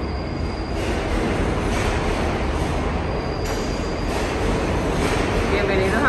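Subway train running through the station: a loud, steady rumble with a faint high wheel squeal twice.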